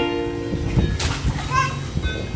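Light ukulele background music with children playing in a paddling pool: a short burst of splashing about a second in, then a child's brief high-pitched voice.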